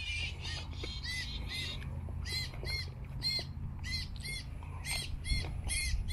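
A bird calling over and over in short, arched notes, about two to three a second, starting about a second in, over a low steady rumble.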